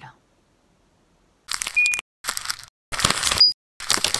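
Near silence for about a second and a half, then an animated end card's sound effects: a run of short, loud noisy bursts with gaps between them, two of them capped by a brief beep, the second beep higher than the first.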